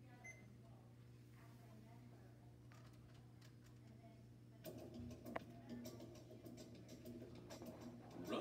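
Near silence with a steady low hum. A little past halfway, faint clicks and a quiet, busier sound begin.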